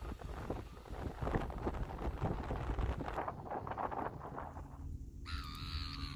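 Irregular crackling and rustling noise of wind on the microphone over wet mudflats, then near the end a short wavering call, like a bird's, lasting about a second.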